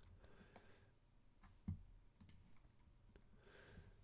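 Near silence with a few faint clicks, one a little louder just under two seconds in.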